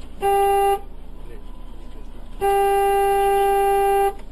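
Car horn honking: a short beep about a quarter second in, then a long steady blast from about two and a half seconds in.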